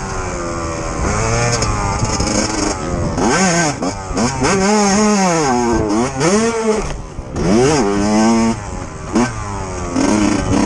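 Yamaha YZ125 single-cylinder 125cc two-stroke engine under riding load, its pitch rising and falling sharply several times as the throttle is opened and closed over the dirt track.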